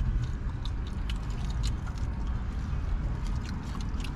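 Scattered small crinkles and clicks of aluminium foil being handled and of chewing on a sandwich, over a steady low rumble in a car's cabin.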